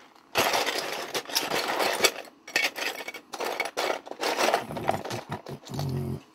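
A hand rummaging through a cardboard box of loose plastic model-kit parts and sprue pieces, the pieces clattering and clicking against each other in a rapid, continuous rattle.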